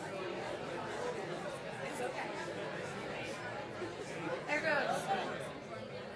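Audience chatter in a large hall: many people talking at once, with one nearer voice louder for a moment about four and a half seconds in.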